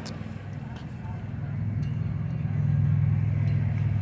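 Low, steady engine hum of a nearby motor vehicle in street traffic, growing louder over the first two seconds and staying strong.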